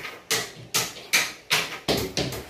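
A quick run of sharp knocks or taps, about two to three a second, evenly spaced.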